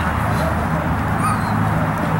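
Young German Shepherd giving a brief high whine about a second in, while gripping a bite pillow, over a steady low outdoor rumble.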